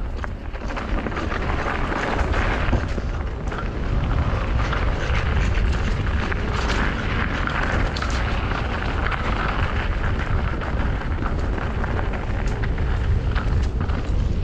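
E-bike riding down a dirt forest singletrack: steady wind rumble on the camera microphone over tyre noise on the trail, with scattered sharp rattles and clicks from the bike.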